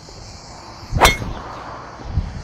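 A golf driver striking a ball off the tee: one sharp crack with a brief ringing, about a second in.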